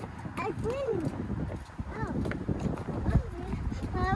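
Several people's footsteps knocking on a hollow wooden boardwalk, with short bits of voices over them.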